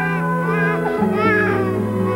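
Newborn baby giving a few short, wavering cries over soft sustained background music.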